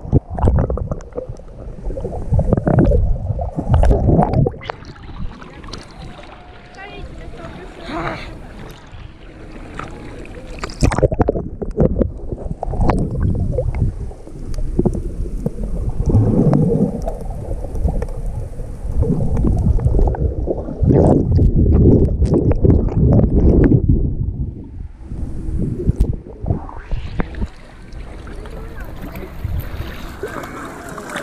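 Muffled water sloshing and bubbling picked up by a camera held underwater in the sea, coming in irregular swells of low rumbling. Near the end the camera breaks the surface and the sound opens up brighter, with splashing water.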